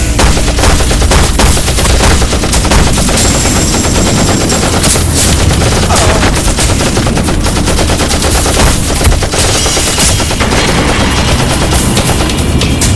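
Rapid automatic rifle fire, shots packed closely together in a long, unbroken rattle.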